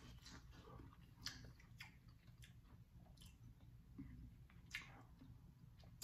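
Faint chewing of a bite of seasoned corn on the cob, with a few soft scattered clicks.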